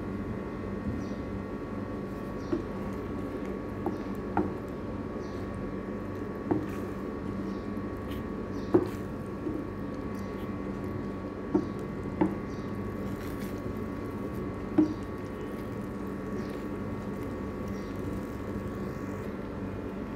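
A vegetable sauce thickened with cornstarch slurry cooking in a frying pan, over a steady hum, with about eight sharp clicks of a utensil against the pan spread through.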